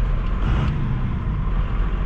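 A 5.9 L 12-valve Cummins turbo diesel runs steadily as the second-generation Dodge Ram pickup drives along, heard from inside the cab with road noise. The engine has just had aftermarket governor springs fitted.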